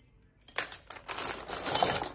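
Loose steel hand tools clinking and rattling against each other as a hand rummages among wrenches and ratchets in a cardboard box. The clatter starts about half a second in, after a brief hush.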